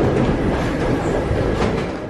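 Paris Métro line 3 train running on steel wheels and rails, a loud steady noise that eases off a little near the end.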